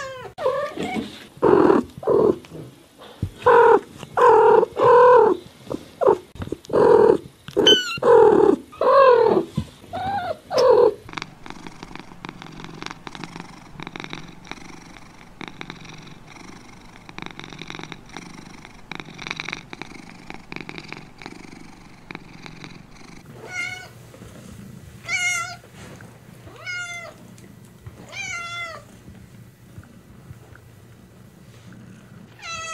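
Domestic cat meowing over and over for about the first ten seconds, in loud calls that fall in pitch. Then a steady stretch of purring, and near the end a kitten's five or six short, higher, wavering mews.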